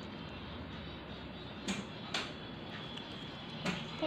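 Low steady room noise with three brief soft knocks or clicks: two close together about halfway through and one near the end.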